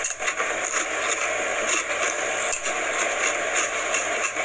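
A person chewing Funyuns onion-flavoured snack rings: a dense, continuous run of crisp crunches, super crunchy.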